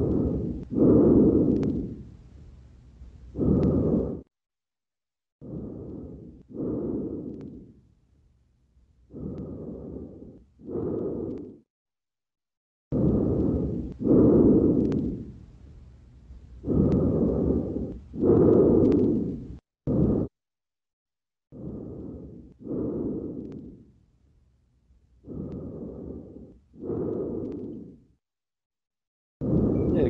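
Lung sounds heard through a stethoscope on the back: seven breaths about every four seconds, each an inhalation followed by an exhalation. The examiners read them as vesicular breath sounds slightly diminished on the right, with fine crackles.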